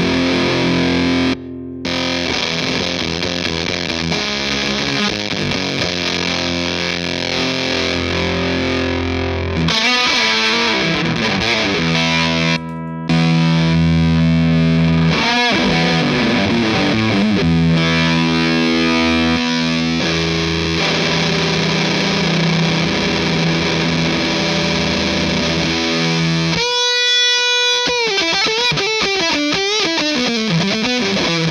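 Electric guitar (Fender Stratocaster Elite HSS) played through a fuzz pedal into a Victory V40D amp: thick, heavily fuzzed sustained chords and riffs with a couple of brief stops, ending on a held single note with vibrato.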